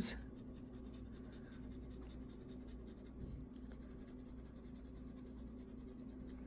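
A coin scratching the coating off a scratch-off lottery ticket. The faint, rapid scraping strokes come several a second and thin out after about four and a half seconds.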